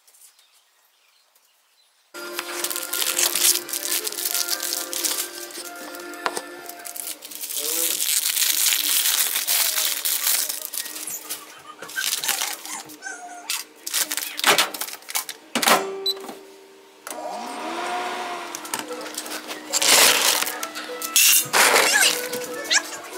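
Background music that comes in about two seconds in, after a near-silent start, with scattered sharp clicks and clatters over it.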